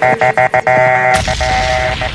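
Gospel Amapiano dance music from a live DJ mix at a breakdown. A held chord stutters in quick cuts for about a second, then the bass drops back in under it.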